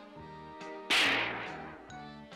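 Light background music, cut by a sudden sharp cartoon sound effect about a second in that fades away over the next second, marking a makeshift hat being swapped on a character's head.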